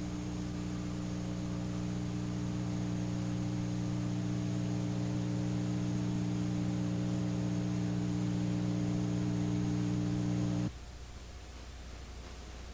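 Steady electrical mains hum with a buzzy stack of overtones over hiss, slowly growing louder, then cutting off abruptly about a second before the end, leaving only faint hiss.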